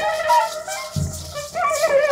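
Free-improvised ensemble music led by a large metal low clarinet playing held, wavering reed notes among other layered instruments. A low thud comes about a second in.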